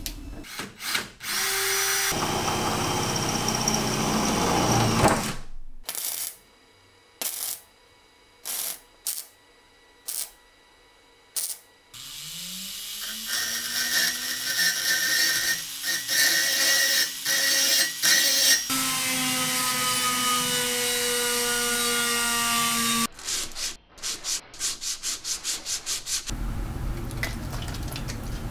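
A power drill fitted with a twist bit runs for a few seconds, followed by a string of separate clicks and knocks. About halfway through, a rotary tool with a small burr spins up with a rising whine and grinds a steel chain link, running steadily for about ten seconds. A quick, even run of clicks follows near the end.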